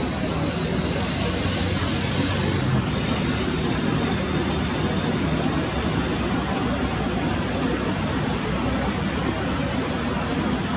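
Steady ballpark background noise: a constant low hum with faint, indistinct voices.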